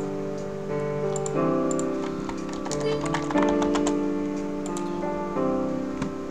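Instrumental intro of a song backing track, sustained keyboard chords that change every second or two, with computer-keyboard typing clicks scattered over it.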